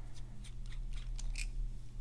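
The threaded nib-and-feed unit of an Aurora Optima fountain pen being unscrewed from the pen body: a few faint, irregular small clicks and scrapes.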